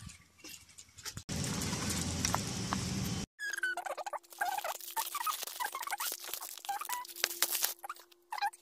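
For about two seconds, a steady rushing noise that cuts off abruptly. Then the dense crinkling, scratching and crackling of a black plastic postal mailer bag being picked and torn open by hand, with a faint steady hum underneath.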